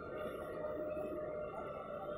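JCB 3DX backhoe loader's diesel engine running under load as the backhoe bucket digs into soil: a steady drone with a high, even whine over it.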